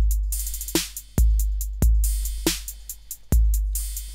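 A programmed 808-style drum machine pattern playing back from Logic Pro X's Step Sequencer and Drum Machine Designer. Deep kicks with long, slowly fading tails hit about four times, under a steady run of quick hi-hat ticks and a few snare or clap hits.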